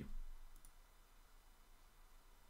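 The end of a spoken word, then low room hiss with one faint, short click about half a second in.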